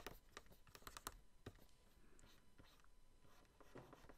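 Faint pen stylus strokes and taps on a Wacom drawing tablet during rough sketching: a quick cluster of clicks in the first second, then scattered short scratchy strokes.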